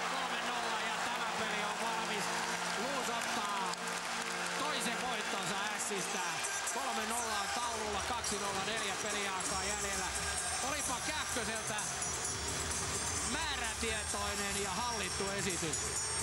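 Ice hockey arena goal celebration: a goal horn holds steady tones for about the first six seconds while the crowd cheers. Goal music with a heavy bass line then comes in under the continuing cheering and chanting.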